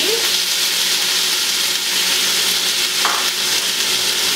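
Corn and sweet peas frying in a large pan on the stove: a steady sizzle.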